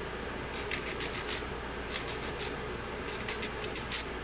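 Hand nail file rasping against cured gel nail tips in three runs of quick, short strokes, filing down the knobs at the tips.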